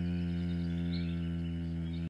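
A man's voice holding one long, low, steady meditative hum, 'mmm', that fades slightly.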